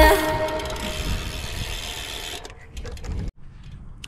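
Music fading out, then a short run of irregular mechanical clicking from a bicycle drivetrain, chain and cogs, as the crank is turned by hand; it cuts off suddenly.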